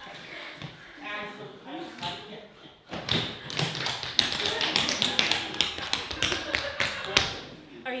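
Tap shoes on a wooden stage floor: a fast, dense run of tap steps starts about three seconds in and ends with one loud stamp about a second before the end.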